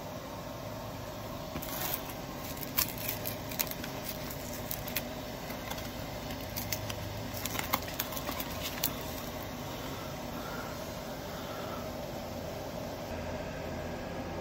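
A paperboard carton of floss sugar being pushed open at its spout: a scattered run of sharp cardboard clicks and crackles over several seconds, over a steady background hum.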